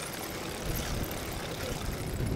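Steady rumble of a mountain bike's knobby front tyre rolling over concrete paving, mixed with wind noise on a microphone close to the wheel.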